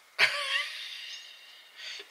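A man's breathy laugh: a sudden exhale that starts sharply and fades away over about a second and a half.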